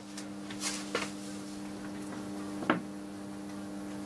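Steady low electrical mains hum, two low tones, from the meter test rig carrying heavy current through a three-phase watthour meter under load. A few faint clicks sound over it.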